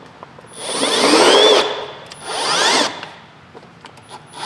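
Milwaukee M18 Fuel cordless drill run in two short bursts, the first about a second long and the second shorter, its motor whine rising as it speeds up and falling as it slows. The drill is tightening a plastic container onto the hex bit driver in its chuck.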